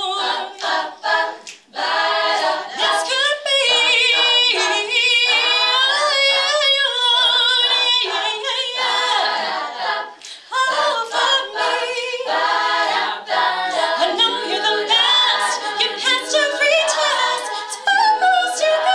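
All-female a cappella group singing live: several women's voices in harmony with no instruments, a lead voice over sung backing, with short clipped notes in the first two seconds.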